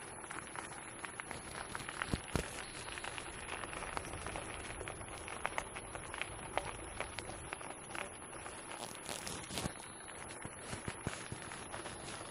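Steady crunching of wheels and paws on a gravel trail as two harnessed dogs pull a wheeled rig, with many small crackles, clicks and rattles.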